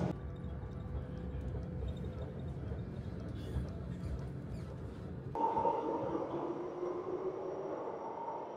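Steady low rumble and hum inside a Renfe class 464 electric commuter train as it runs. About five seconds in, the sound changes abruptly to an underground station platform, where an electric train gives off a steady whine of several tones.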